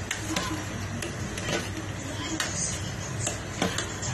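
Small irregular clicks and taps at a pot of soup boiling on a gas stove, over a steady low hum. Faint voices in the background.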